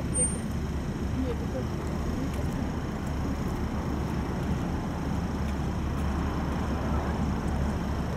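Busy city-street ambience: a steady low rumble of road traffic on a busy avenue, with faint voices of passing pedestrians mixed in.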